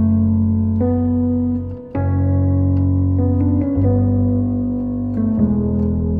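Sampled piano (the Foundations Piano virtual instrument) playing a slow chord progression. Sustained chords with bass notes under them change about every one to one and a half seconds, with a brief drop in level just before the chord change near two seconds in.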